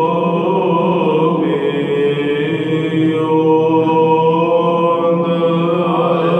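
A male Byzantine chanter (protopsaltis) sings a doxastikon hymn solo in Byzantine chant, a slow, sustained melismatic line. The melody wavers in quick ornaments about a second in, over a steady low held note.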